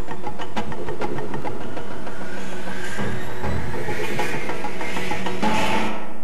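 Loud intro theme music with a fast, steady beat, and a rising sweep that builds over the last few seconds.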